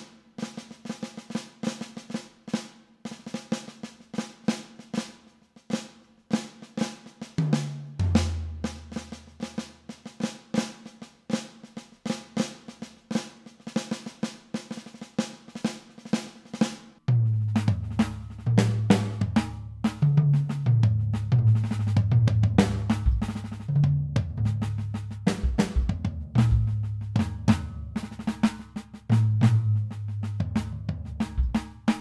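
Electronic drum kit sounds from a KAT KT-M1 drum module, triggered by sticks on a trapKAT multi-pad surface: fast, dense snare-led playing with rolls. From a little past halfway the playing grows louder, with low notes that step between pitches under the strikes.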